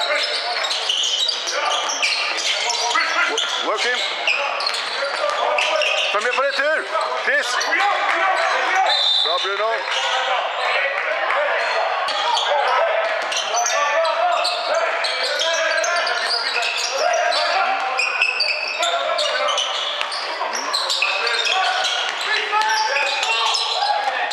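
Basketball game on a wooden court: the ball bouncing as it is dribbled, many short sharp strikes, over players and spectators calling out, all echoing in a large sports hall.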